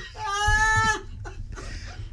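A single high-pitched, wavering vocal squeal from a person, held for a little under a second.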